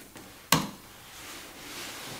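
A single sharp click of a computer key about half a second in, then a faint hiss that slowly grows louder.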